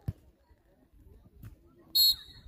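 A referee's pea whistle gives one short, shrill blast near the end. Before it there is a single dull thump right at the start, then faint background.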